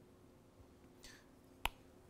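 A single sharp click about one and a half seconds in, over faint room hum, with a brief falling hiss shortly before it.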